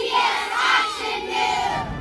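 A large group of children shouting together in one drawn-out cheer, many voices overlapping.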